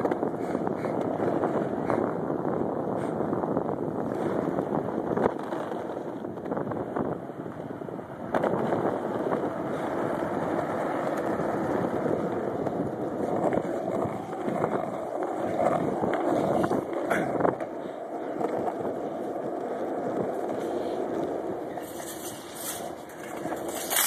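Skateboard wheels rolling fast over asphalt, a steady rolling noise with a few sharp clacks from bumps and cracks in the pavement. The board is coasting with no braking, left to slow down on its own.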